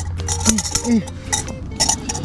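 A small metal pan clinking and scraping against a metal cooking pot as diced ham and peas are tipped in, in several short knocks.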